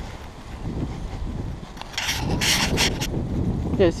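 Dry fallen leaves rustling and crunching underfoot, loudest for about a second midway, over a low wind rumble on the microphone.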